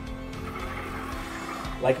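Background music with steady held notes, over a soft brushing hiss from a Hurricane Spin Broom pushed across a laminate floor, its plastic wheels turning the spinning bristle brushes. A man's voice says one word near the end.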